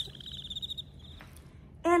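Crickets chirping as an added sound effect, the stock cue for an awkward silence: a fast, high, pulsing trill that stops a little over a second in.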